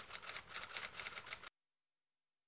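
A faint, rapid run of light clicks, about ten a second, that cuts off abruptly into dead silence about one and a half seconds in.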